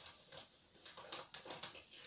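Faint scattered rustles and soft taps, irregular and thickest in the second half, as a person moves close to the microphone.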